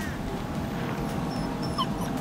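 Miniature pinscher giving a few short, high-pitched whines over a steady low outdoor rumble.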